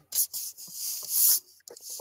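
A hissy rubbing, rustling noise: a short burst, then a longer one that swells and stops about a second and a half in.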